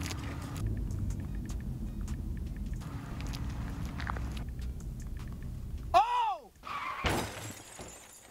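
Low, steady road rumble inside a moving car, then about six seconds in a short squeal that arches up and down in pitch, followed a second later by a crash with breaking glass: a car crash sound effect.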